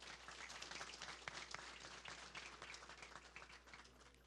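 Audience applauding faintly, many hands clapping, tapering off near the end.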